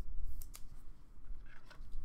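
A trading card in a plastic sleeve being handled between the fingers: a couple of short plastic clicks about half a second in, then a soft scraping rustle near the end.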